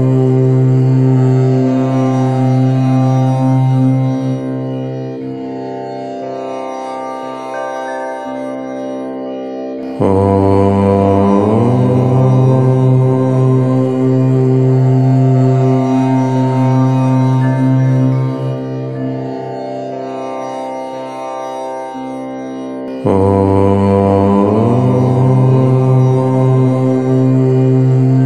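Long chanted "Om" in a low voice, each syllable held for about thirteen seconds: loud on the open vowel, then sinking to a quieter hum. New chants begin about ten seconds in and again near the end.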